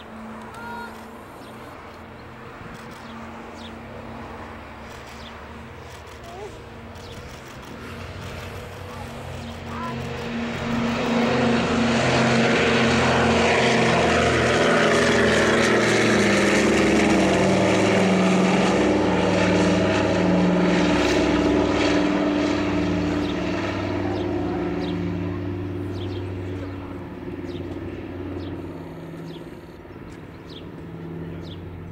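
Douglas C-47 Skytrain's two Pratt & Whitney R-1830 radial piston engines at takeoff power, a steady propeller drone that swells as the plane rolls and lifts off. It is loudest as the aircraft passes close by through the middle, then drops in pitch and fades as it climbs away.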